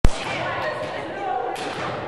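A sharp click as the recording starts, then indistinct voices chattering in a reverberant gymnasium, with a thud about one and a half seconds in.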